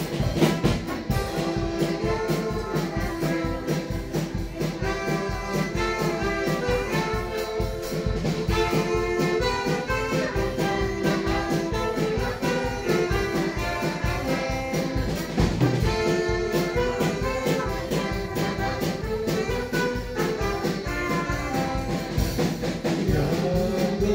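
A live dance band playing an instrumental passage with a steady beat and a melody line.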